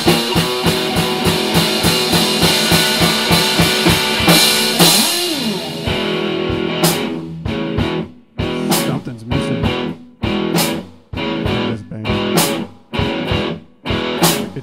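Instrumental break in a rock song with no singing. For about six seconds guitar plays over a steady beat, then the music thins to choppy strummed guitar chords with short gaps between them.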